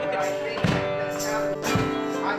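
Ukulele and acoustic guitar strumming chords together, with a strong strum about once a second and the chords ringing between. Each strum comes with a low thump.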